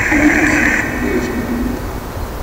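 A hiss of static confined to a narrow band, which cuts off abruptly under a second in, over a fainter low hum.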